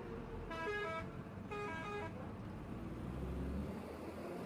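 Vehicle horn sounded twice in quick succession, each blast a short run of changing notes, over the steady engine and road rumble of a moving vehicle.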